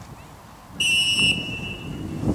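Referee's whistle: one short, loud blast about a second in, a single steady high note lasting about half a second, with a faint trace lingering after it.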